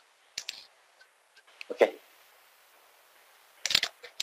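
A few sharp clicks of a computer mouse and keys being worked: a pair just after the start, a couple more in the middle, and a quick cluster near the end.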